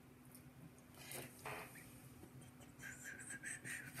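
Faint handling sounds: a soft rustle about a second in, then a quick run of light scratchy strokes near the end.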